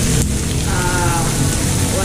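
Pork belly sizzling steadily on a tabletop Korean barbecue grill, a fine crackling hiss of fat frying.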